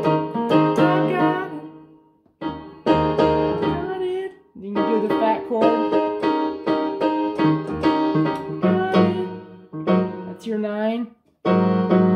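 Yamaha digital keyboard in a piano voice playing a gospel chord progression with both hands, in sustained chord phrases broken by brief pauses about 2, 4.5 and 11 seconds in.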